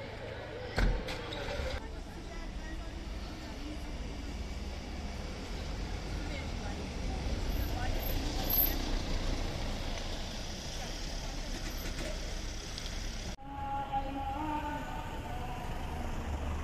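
Street ambience with the low rumble of a Ford Transit minibus driving slowly along a paved street. Voices are heard at the start and again near the end, and there is a sharp thump about a second in.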